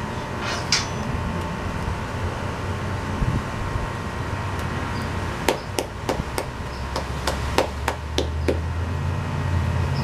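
A person clapping, about ten sharp claps in a loose rhythm lasting about three seconds, beginning past the middle, over a steady low hum.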